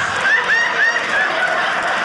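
Loud audience laughter, many short high-pitched laughs overlapping.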